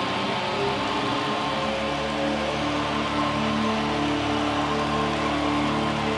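Live electronic music: held synthesizer chords that change pitch now and then, with no clear beat, over a steady wash of crowd noise.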